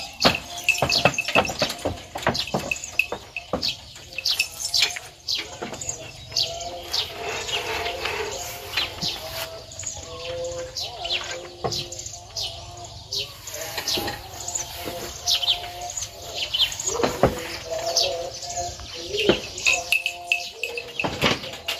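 Small birds chirping busily and repeatedly, with a few scattered knocks and clatters among them.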